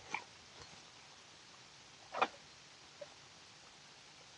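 A person eating a bite of sandwich: quiet chewing with two short mouth noises, one just after the start and a louder one about two seconds in, and a faint click a little later.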